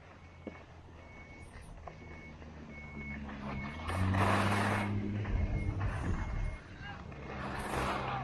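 A vehicle's reversing beeper repeating about once a second over a low engine hum that rises in pitch about three seconds in. Skis scrape and hiss on packed snow in two loud surges, about four seconds in and again near the end.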